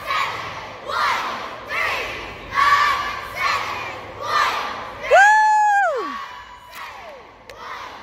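Cheerleading squad shouting together in rhythmic bursts, a little faster than one a second, while stunting, then one long held shout about five seconds in that slides down in pitch at its end.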